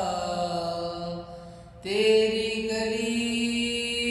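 A man singing solo, drawing out long held notes; the voice drops away briefly about a second and a half in, then comes back on a new long note.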